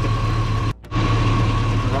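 2002 Chevrolet Silverado's Vortec engine idling steadily, warm, with a faint steady whine above it; the sound drops out abruptly for a moment just under a second in.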